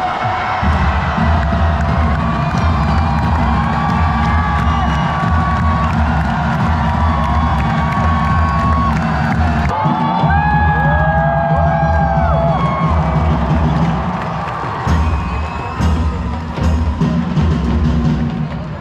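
Loud music with a heavy bass beat playing over a large stadium crowd that cheers and whoops. A few drawn-out calls rise and fall over the crowd about ten seconds in.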